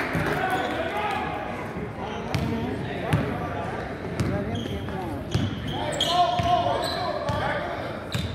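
A basketball being dribbled on a hardwood gym floor, with a few separate sharp bounces over a background of indistinct voices in the gym.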